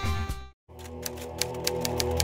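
A music track cuts off about half a second in, and after a brief silence soft sustained music begins with a typewriter sound effect: rapid key clicks, several a second, as on-screen text types out.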